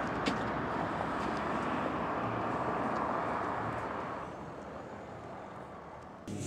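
Outdoor traffic noise: a passing vehicle's steady hiss and rumble that fades away about two-thirds of the way through.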